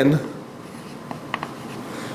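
Chalk writing on a blackboard: a few short, light taps and strokes a little after a second in.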